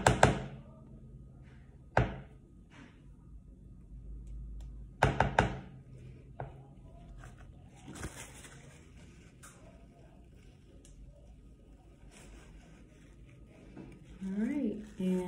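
Scattered knocks and thunks of a silicone spatula against a plastic mixing bowl as whipped shea butter is scooped out, loudest right at the start and in a cluster about five seconds in, with smaller knocks about two and eight seconds in.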